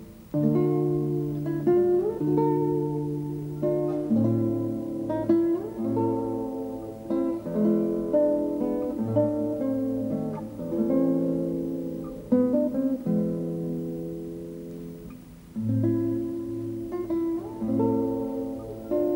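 Acoustic guitar music from a student tuna ensemble: plucked and strummed chords under a picked melody, with no singing.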